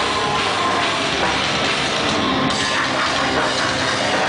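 Metalcore band playing live: drum kit and distorted electric guitars in a loud, dense wall of sound.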